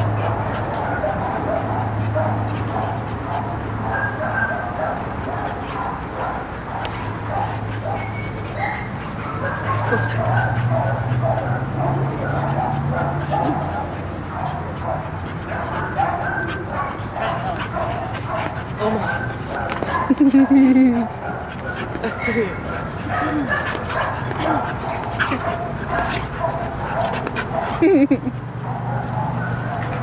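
Two dogs play-fighting: a run of short play barks, yips and whimpers that goes on with little pause, with one louder burst about twenty seconds in.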